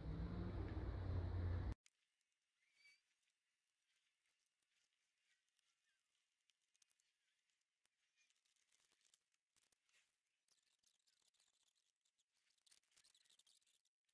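Near silence: faint steady background noise that cuts off sharply about two seconds in, then dead silence.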